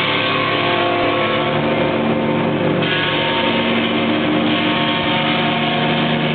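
Live rock band playing loud: distorted electric guitar and bass guitar holding long sustained notes over a dense, droning wall of sound.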